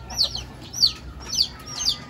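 Birds chirping: a run of short, high chirps, each falling in pitch, repeating at an even pace of about two a second.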